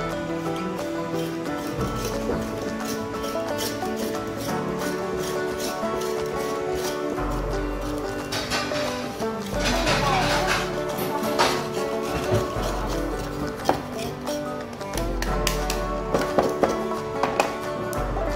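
Background music with a bass note that pulses on and off.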